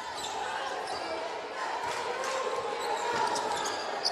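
A basketball being dribbled on a hardwood court over the steady crowd noise of an arena.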